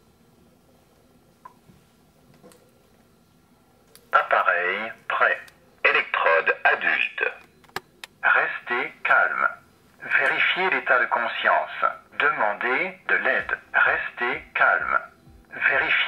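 ZOLL AED Plus defibrillator, just powered on, speaking its recorded French voice prompts through its small built-in loudspeaker in a thin, tinny voice. About four seconds of quiet with a few faint clicks come first, then the prompts in several short phrases with brief pauses.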